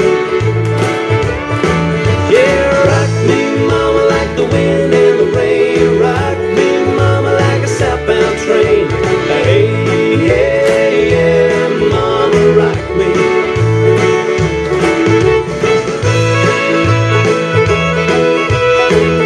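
Country music with a steady beat, in an instrumental passage between sung verses.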